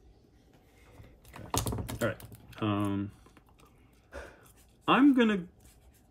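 Hands handling polymer clay and tools on a work table, giving a quick run of sharp clicks and taps. These are followed by wordless voice sounds: a short level hum, then a louder 'hmm' that falls in pitch.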